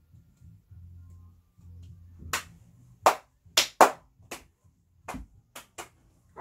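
A run of about nine sharp hand claps at an uneven pace, starting about two seconds in.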